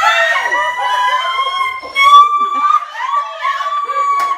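Several women screaming with excitement: loud, long, high-pitched held shrieks, with a sharper peak about two seconds in.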